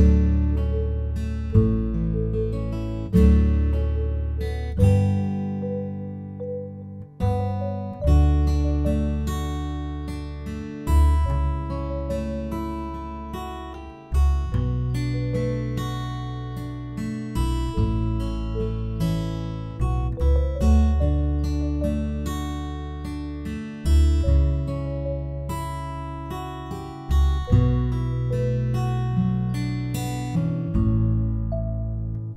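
Instrumental acoustic guitar music: chords struck every second or two over a deep bass note, each left to ring and fade before the next.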